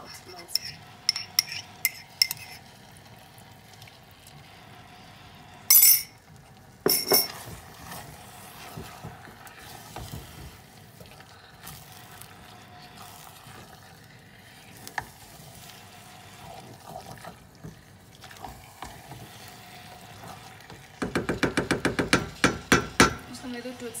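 Chakalaka stirred in a stainless-steel pot on a gas stove, a metal spoon clinking against a small container at first and the stew softly sizzling. Two loud sudden clatters come about six and seven seconds in, and near the end a quick run of rapid scraping strokes as the spoon works through the pot.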